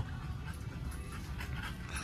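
Micro bully puppy panting, under steady low background noise.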